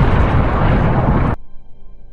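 Loud, continuous rumbling explosion sound effect that cuts off abruptly about a second and a half in, leaving quiet music.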